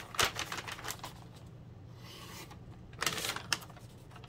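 Handling noise of a sheet of paper: crackly rustling and light clicks in a cluster near the start and again about three seconds in, quieter in between.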